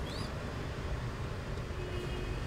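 Steady low rumble of background noise, with one brief, high, rising squeak just after the start.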